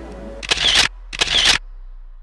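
Two camera shutter clicks, the first about half a second in and the second just over a second in, each a short sharp burst, over the low, fading tail of background music.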